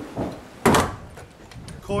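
A single loud clunk about half a second in, with a softer knock just before it, as pneumatic nail guns are handled and swapped.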